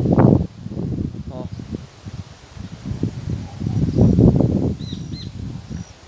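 Wind gusting on the phone's microphone: a low, pitchless rumble that swells at the start and again, strongest, about three to four and a half seconds in.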